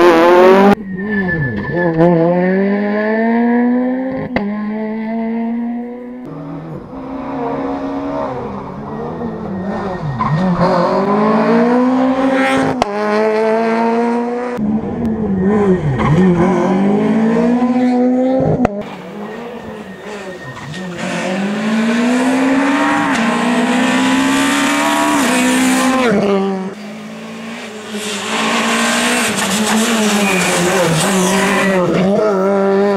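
Rally car engine revving hard on full throttle, its pitch climbing and dropping back again and again as it shifts up through the gears. Several passes are cut together, so the sound changes abruptly a few times.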